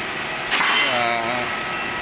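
Steady workshop hiss, with a single knock about half a second in followed by a man's drawn-out, wordless voice sound lasting about a second.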